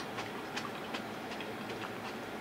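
Close-miked chewing with the mouth closed: soft, irregular wet clicks.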